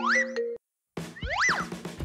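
Cartoon-style comedy sound effects: a whistle-like glide rising in pitch that cuts off into a moment of silence, then a second glide that rises and falls, over light background music.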